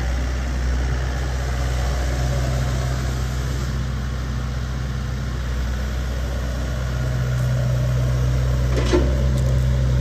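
Bobcat E80 compact excavator's diesel engine running steadily, a little louder in the last few seconds, with one short click about nine seconds in.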